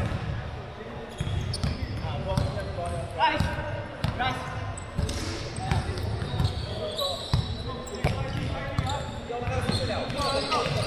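Basketball bouncing on a hardwood court in a large echoing indoor hall, a string of low thumps, with players' indistinct voices calling out across the court.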